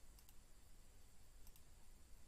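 Near silence: faint room tone, with two pairs of faint, short clicks, one pair just after the start and one a little past the middle.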